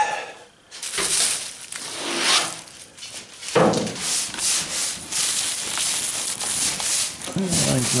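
Hand sanding: sandpaper rubbed back and forth over primer-filler on a car body panel in repeated strokes, starting about a second in.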